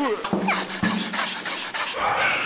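Wordless cartoon-character vocal noises: two quick falling cries and a held low note lasting about a second.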